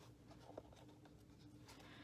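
Near silence with faint scratchy handling of a folded satin ribbon and a pair of scissors being lined up for a cut, and one small click about a third of the way in.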